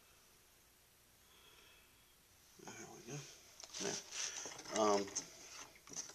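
A man's voice speaking in short bursts over low room tone, starting about two and a half seconds in.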